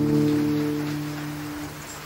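A live band's final chord ringing out and fading away, its held low notes dying out about a second and a half in, over the steady hiss of a cassette recording.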